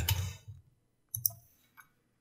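A few isolated clicks of a computer keyboard and mouse: a soft one about half a second in, a stronger one just past a second in, and a faint one near the end.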